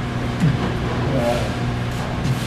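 A steady low machine hum with a brief louder sound about half a second in.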